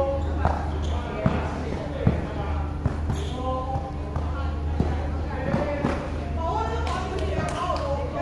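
Players and onlookers talking over each other across a court, with a basketball bouncing a few sharp times on plastic modular court tiles in the first three seconds, over a steady low hum.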